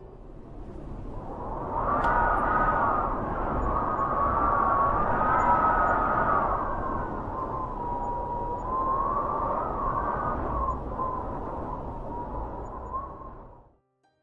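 Howling wind sound effect: a whistling tone that wavers up and down in pitch over a rushing noise, fading in over the first couple of seconds and fading out near the end.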